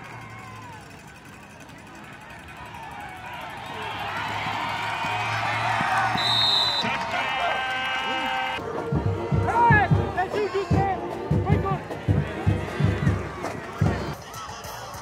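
Crowd voices at a football game, swelling in loudness, then about nine seconds in a music track with a heavy, thumping bass beat and a vocal takes over.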